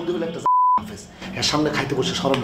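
A censor bleep masking a word in a man's speech: one short steady beep of about a third of a second, with all other sound cut out beneath it, about half a second in.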